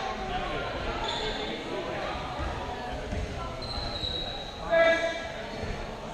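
Rubber dodgeballs bouncing and thudding on a gymnasium's wooden floor, echoing in the large hall, with people's voices and a short call about five seconds in.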